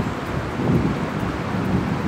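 Wind buffeting the camera microphone outdoors, a steady rushing noise that swells and eases.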